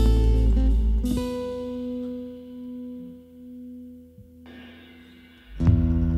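Acoustic band of acoustic guitar, double bass and percussion playing, then breaking off about a second in to leave a single held note ringing softly and swelling in loudness. The full band comes back in with a sharp strike just before the end.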